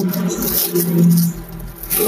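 Clear plastic bag crinkling and rustling as it is handled, with new clothes inside, over a low steady hum.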